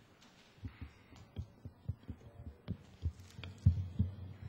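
A string of dull low thumps and knocks at irregular spacing, about three a second, the loudest near the end.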